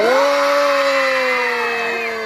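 One voice holding a single long, loud call, amplified through a microphone and loudspeaker, starting abruptly and sliding slowly down in pitch.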